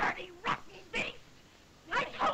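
Short high cries in quick succession, about two a second, each breaking off sharply, on a thin old film soundtrack.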